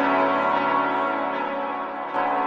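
Instrumental music with no vocals: a bell-like keyboard chord rings and slowly fades.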